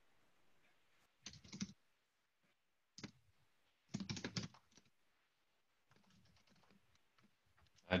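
Faint computer keyboard typing: a few short bursts of keystrokes in the first half, with near-silent gaps between them.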